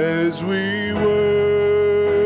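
A male song leader singing a slow worship song into a microphone over instrumental accompaniment, holding one long note from about half a second in.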